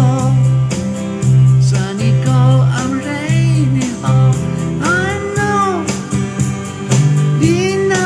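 Country-rock band music with an electric guitar lead playing bent notes over a steady bass and rhythm backing.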